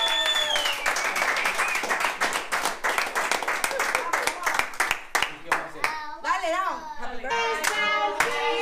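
A group of people clapping their hands together in a steady beat, with voices calling out over it; the clapping thins out near the end.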